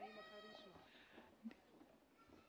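A faint, high-pitched whoop from a spectator in the arena crowd, held for well under a second and fading out, followed by a single short click about a second later.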